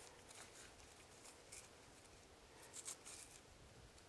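Faint, scattered scratching and crumbling of dry soil as fingers work a smoky quartz crystal loose from a crystal pocket in a dirt bank, a little louder near the end.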